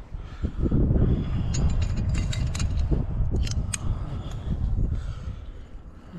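Metal climbing gear clinking and ticking against itself on the harness while a climber moves up rock, with short sharp clicks scattered through. Under it runs a low rustling rumble of the climber's body and clothing moving against the body-mounted camera, loudest about a second in.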